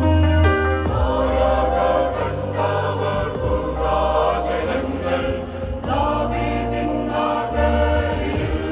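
A mixed choir singing with electronic keyboard accompaniment over a steady bass. Keyboard chords are held for the first second before the choir comes in.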